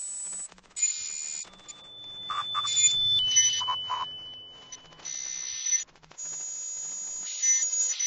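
Electronic outro sound design with sharp-edged bursts of static-like hiss. A held high beep-like tone comes in about one and a half seconds in, steps down slightly in pitch past three seconds and stops at about five seconds.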